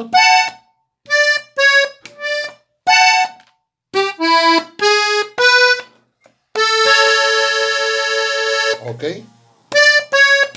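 Hohner Compadre diatonic button accordion in the key of E playing a short corrido ornament as a string of separate notes and short chords, then holding one long chord for a little over two seconds near the end.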